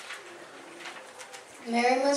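Faint, low voices in a small room, then near the end a young reader starts speaking loudly and clearly.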